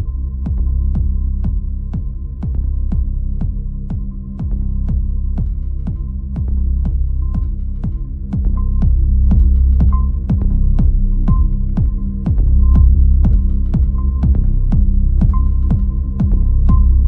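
Minimal electronic music: a sharp click-like beat about two times a second over a deep, throbbing bass drone, with a thin high tone and a short blip recurring about every second and a half.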